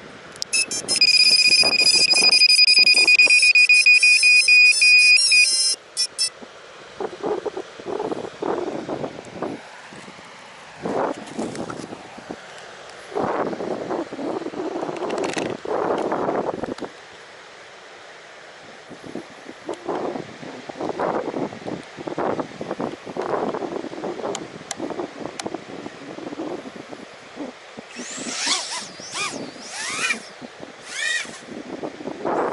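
A 3-inch FPV quad's Mamba 1408 4000KV motors, driven by a Bluejay-flashed ESC, sound a loud, steady, pulsing beep for about five seconds right after the battery is plugged in: the ESC's power-up tone. The quad then flies, its motor whine swelling and fading, with sweeping rises and falls in pitch near the end as it passes close.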